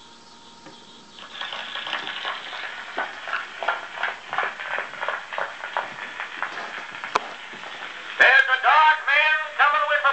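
Edison two-minute black wax cylinder starting to play on an Edison Model B Triumph phonograph through a black and brass horn. About a second in, the hiss and crackle of the cylinder's surface noise begins. Just past eight seconds a click is followed by the recorded spoken announcement at the start of the cylinder.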